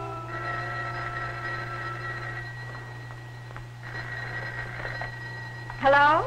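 Orchestral background music holds a few long notes that die away in the first half. In the second half a telephone rings, and a woman's voice breaks in right at the end as the call is answered.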